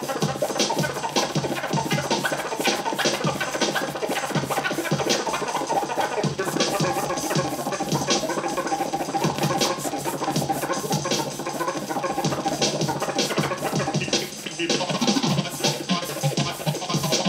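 Turntable scratching: a vinyl record worked back and forth by hand over a steady beat.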